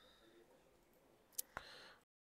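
Near silence broken by two sharp clicks about a second and a half in, a fraction of a second apart.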